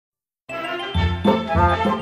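Short bright musical jingle introducing a course audio track. It starts about half a second in, and a bass line joins about a second in, pulsing roughly three times a second.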